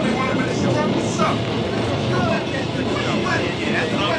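Indistinct, overlapping voices over a steady background rumble, from the album's intro skit; no words come through clearly.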